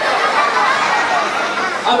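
Overlapping high-pitched voices chattering.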